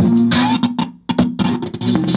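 Guitar-and-bass music played through an AKIXNO 40 W Bluetooth soundbar, streamed from a phone, with a brief gap about a second in.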